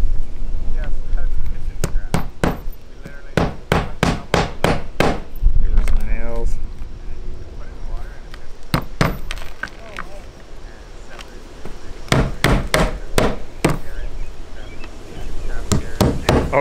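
Claw hammer driving roofing nails through a roof vent's flange into asphalt shingles: runs of quick, sharp strikes about three a second, in several groups with pauses between.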